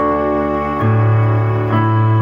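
Digital piano with a strings voice layered over the piano, playing slow held chords in a classical style. The notes sustain without dying away. A new bass note enters about a second in.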